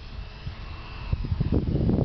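Wind buffeting the microphone in irregular gusts, heavier in the second half. A faint high whine from the radio-controlled Piper Pawnee model's electric motor is heard passing in the first second.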